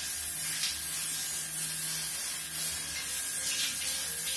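Steady hiss of water spraying from the handheld shower head of an electric instant water heater.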